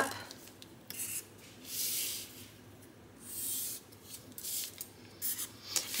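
A Sharpie marker drawn along a wooden ruler across paper in two strokes, about two and three and a half seconds in, with a few light taps of the ruler and pen around them.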